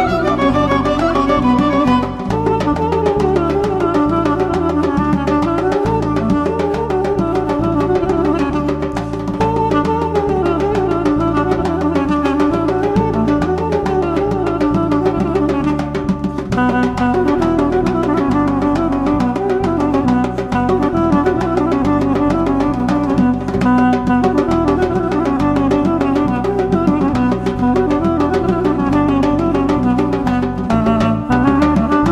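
Armenian folk dance tune led by a duduk: a fast, ornamented melody over a held drone note and a steady drum rhythm. The arrangement shifts about halfway through.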